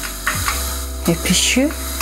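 Steady background music with a low hum underneath that gets stronger about half a second in; a short spoken word cuts across it around the middle.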